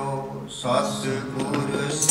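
Sikh kirtan: harmoniums holding sustained tones under male voices singing, with a brief dip in the sound about half a second in before the singing comes back in.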